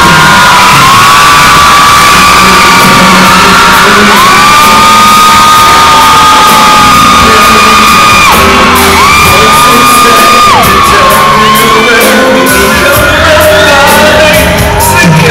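Live pop band playing with a singer, heard very loud, as if recorded from among the audience. Long held sung notes slide into and out of pitch, mixed with shouting voices.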